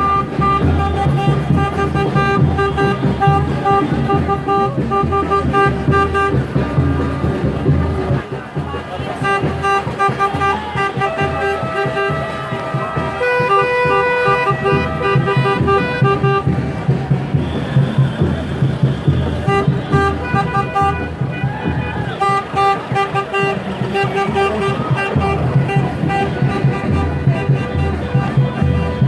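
Vehicle horns honking in short, repeated blasts, over the drumming of a batucada band.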